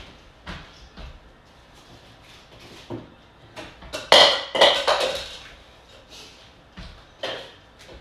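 A freezer being opened and searched: scattered knocks and clicks, with a loud cluster of clattering, ringing knocks about halfway through as frozen containers are moved, and another knock near the end.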